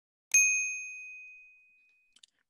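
Notification-bell 'ding' sound effect. It is one clear, high-pitched chime that strikes sharply and fades away over about a second and a half.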